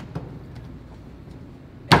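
Hand-pulled noodle dough being handled on a steel-topped worktable: a couple of soft knocks, then near the end one sharp, loud slap with a short ringing tail.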